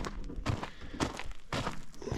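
Footsteps on dry desert ground: a few soft steps, about two a second.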